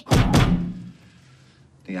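Two heavy thunks about a third of a second apart, as something is set down hard on a wooden kitchen counter. The sound dies away within about a second.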